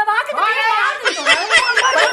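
High-pitched women's voices shouting and crying out over one another in a physical scuffle, with laugh-like shrieks among the cries.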